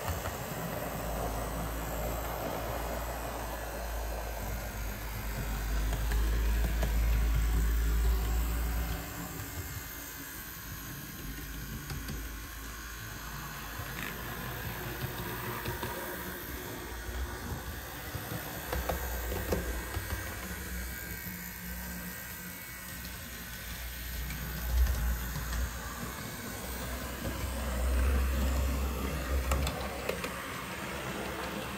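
HO-scale Athearn Blue Box GP38 model locomotive running along the track, its motor and drivetrain whirring steadily, growing louder and fainter as it passes close and moves away, with now and then a faint click. A little gear noise comes from its new gears, which have not yet worn in.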